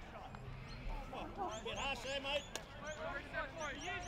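Several voices of players and spectators calling out at once across a sports field, none clearly worded, with two short sharp knocks about two seconds in.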